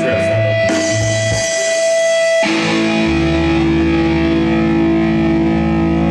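Amplified electric guitar and bass letting long notes ring and sustain, without a drum beat; the held notes change about two and a half seconds in.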